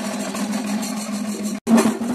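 Rapid live festival drumming over a steady held low tone; the sound drops out for an instant about one and a half seconds in and comes back louder.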